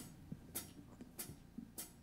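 A drummer's count-in: faint, evenly spaced ticks, about one every 0.6 seconds, marking the tempo for the song about to start.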